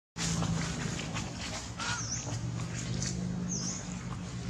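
Outdoor ambience with a steady low hum and scattered faint clicks. Two short, high animal chirps come about two seconds in and again near the end.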